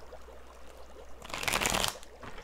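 Tarot cards being handled and shuffled, a short papery rustle past the middle, over a faint low hum.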